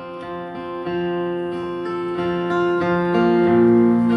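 Acoustic guitar strummed alone in a slow chord progression, each chord ringing on and changing about once a second.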